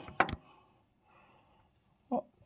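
Two short, sharp clicks about a quarter of a second apart near the start, then near silence.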